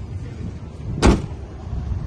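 The tailgate of a 2012 Volkswagen Touran MPV is pulled down and slams shut once, about a second in, with a single loud thud.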